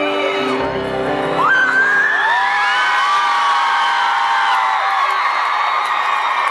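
A live band holds a final chord, which stops about a second and a half in. The concert crowd then screams and cheers, with many high voices overlapping.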